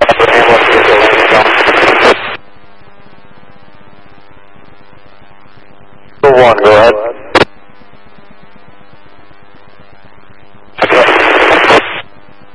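Police scanner radio: a burst of static about two seconds long, a brief garbled transmission about six seconds in, and another burst of static of about a second near the end, with a steady hum between.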